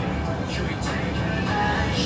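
Faint background music over a steady low hum, heard in a pause between speech.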